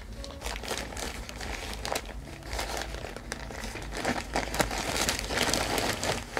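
Thin plastic bag crinkling and rustling as hands pull it open and handle it, in irregular crackles that get busier and a little louder in the last couple of seconds.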